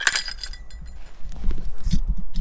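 A wooden ice-fishing tip-up trips as the line is pulled: its flag springs up and a small bell clipped to the rod rings briefly with a sharp, fading jingle. Low rumbling handling noise on the microphone follows near the end.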